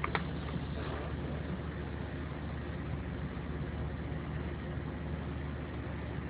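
Steady low hum with a haze of hiss, an unchanging background drone, with a single sharp click just after the start.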